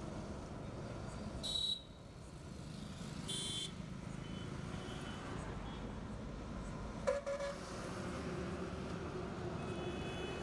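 Steady rumble of highway traffic, with short vehicle horn toots about one and a half and three and a half seconds in and fainter ones later. A sudden knock sounds about seven seconds in.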